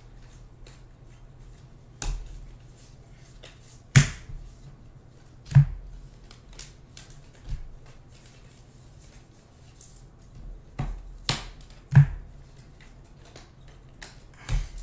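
Trading cards handled and flipped through one at a time: soft slides and ticks of card stock, with a sharp snap or click every second or two as a card is set down against the stack. A faint steady low hum runs underneath.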